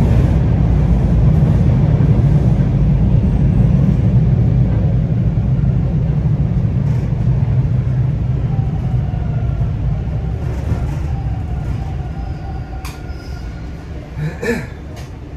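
TTC Line 2 T1 subway train decelerating into a station, heard from inside the car: a loud, steady rumble from the wheels and running gear that slowly fades as the train slows. Faint whining tones come in during the second half, with a sharp click near the end.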